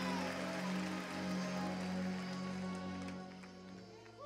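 Soft sustained chord on an electric keyboard, held steady and fading out near the end.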